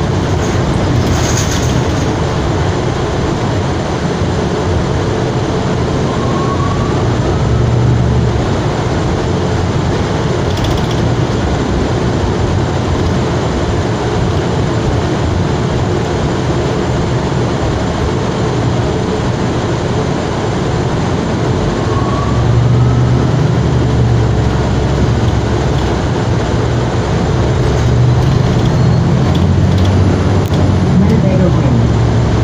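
Cabin noise inside a 2020 Gillig BRT hybrid-electric transit bus under way: a steady low rumble of drivetrain and road noise that grows a little louder about two-thirds of the way through and again near the end. A faint, short rising whine sounds twice.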